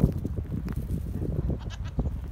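Goats bleating, over a steady low rumble.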